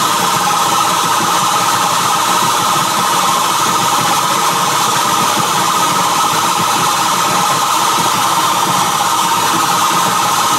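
Live experimental noise music played loud through the PA: a dense, unchanging wall of distorted noise with a strong steady band in the middle, without beat or pauses.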